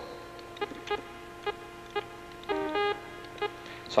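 A string of short electronic beeps at irregular intervals, with one longer two-note tone a little past halfway, over a faint steady hum.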